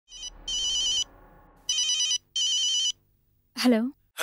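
Mobile phone ringtone: a warbling electronic trill in three bursts of about half a second each, after a short first blip. It stops, and the call is answered with a spoken "hello" near the end.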